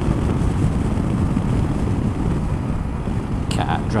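Steady wind rush on the microphone of a motorcycle riding at road speed, with engine and road noise underneath. A voice starts near the end.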